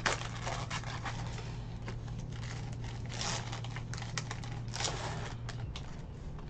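Crinkly plastic wrapper of a trading-card box-topper pack being torn open and handled by hand: irregular crackles and snaps, loudest at the very start and again briefly twice later, over a low steady hum.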